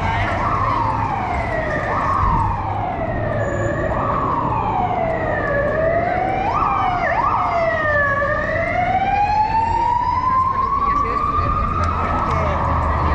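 An emergency vehicle's siren wailing over city street traffic: its pitch jumps up and slides down again about every second and a half, then climbs slowly and steadily over the last few seconds.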